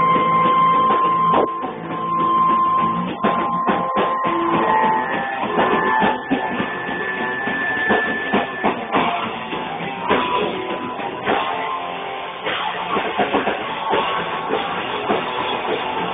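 Rock band playing live, instrumental with no singing: electric guitars over a drum kit, with long held guitar notes in the first half. Muffled, poor-quality recording.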